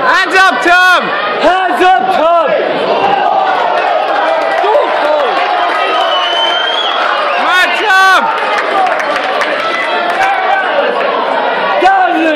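Crowd shouting and cheering over a steady hubbub of voices, with loud yells from individual men in the first couple of seconds and again about eight seconds in.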